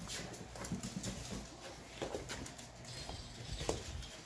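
Yorkshire terrier's claws clicking irregularly on a hardwood floor as it scampers after a balloon.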